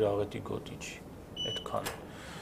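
A man speaking in Armenian, with pauses, and one short high electronic beep about one and a half seconds in.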